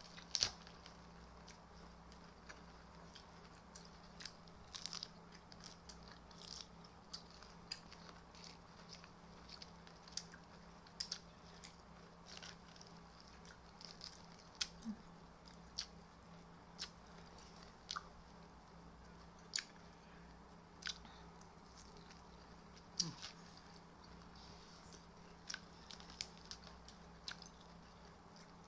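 A person chewing raw vegetable salad (shredded carrot and greens): faint, irregular crunches and wet mouth clicks every second or so, over a steady low hum.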